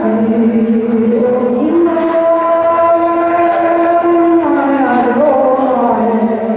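A man singing a Mường folk song into a microphone in long, drawn-out notes. One note steps up about two seconds in and is held, then the voice slides down near the end.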